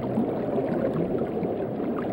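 Steady low underwater wash of water, with no clear events in it.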